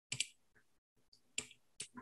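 Computer mouse clicking: three short, sharp clicks, the first about a quarter second in, two more close together near the end.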